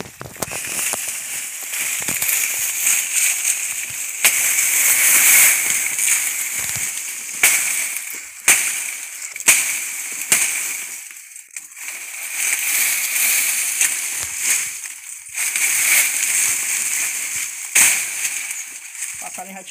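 Dry banana leaves and palm fronds rustling and crackling as they are brushed and pushed aside. Several sharp snaps of dry leaf stand out, the loudest around the middle and at the end.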